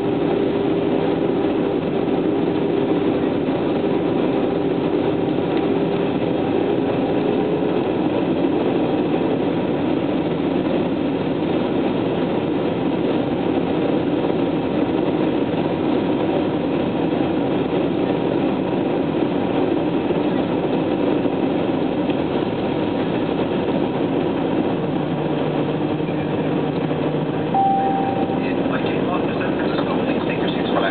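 Steady jet engine and air noise heard inside an airliner cabin on approach, with an engine tone that fades out about a quarter of the way through. A short high beep sounds near the end.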